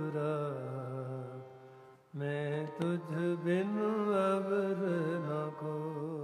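Sikh kirtan: male voices singing a long, drawn-out melodic line over a steady harmonium accompaniment. The sound fades away about two seconds in, then the singing and harmonium come back in together.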